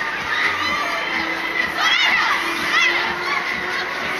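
Riders on a spinning Deca Dance fairground ride screaming and shouting together, several high wavering screams over a din of voices, the loudest about two seconds in.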